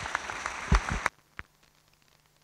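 Audience applause, a dense patter of clapping, with a loud thump in the middle; the sound cuts off abruptly about a second in, leaving near silence.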